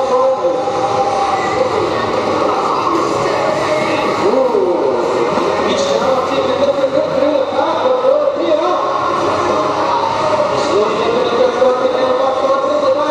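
Roller skate wheels rolling on a wooden sports-hall floor as a pack of roller derby skaters moves by, under a steady hubbub of voices and shouts.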